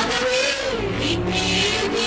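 Worship song sung by several voices into microphones over an electronic keyboard accompaniment; a sung note rises and falls about half a second in.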